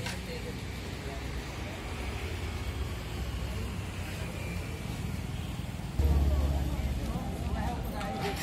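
Outdoor field sound of a low vehicle engine rumble with indistinct voices behind it. The rumble gets suddenly louder and deeper about six seconds in.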